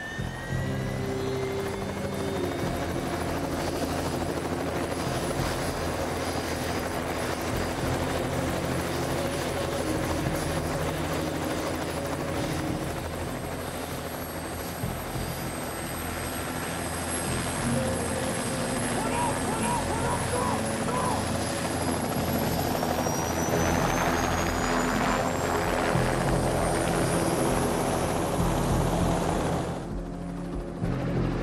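Helicopter turbine engine running with the main rotor turning. A whine finishes climbing about two seconds in, and a high whine rises steadily in pitch over the last several seconds as the machine lifts off.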